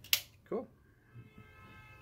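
One sharp clack just after the start as the finished hard-drive caddy is handled and put down, followed by quiet handling.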